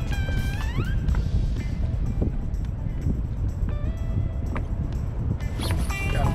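Steady low rumble of wind buffeting the microphone over open water. Background music trails off in the first second, and a voice starts shouting near the end as a rod bends with a fish on.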